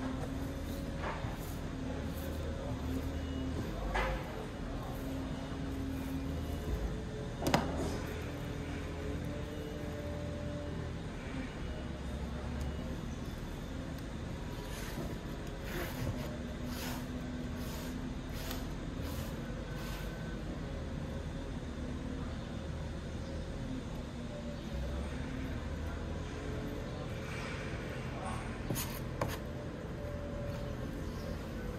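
Steady low hum of a large hall, with a few light knocks and clicks from handling work on a table. The loudest knock comes about seven and a half seconds in.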